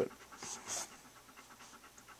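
A labradoodle panting softly close to the microphone, with two stronger breaths about half a second in, then fainter.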